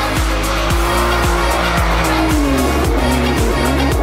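Music with a steady beat, about two beats a second. Under it, a Nissan GT-R race car's engine passes at speed, its note dropping about halfway through as it goes by.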